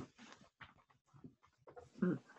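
Near silence: faint room tone over a video call, with a few faint, brief sounds.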